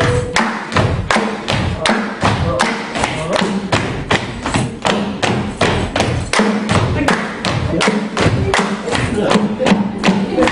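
Dancers of a Djiboutian folk dance keep a steady rhythm by clapping and stamping, about three to four sharp beats a second, with no singing over it.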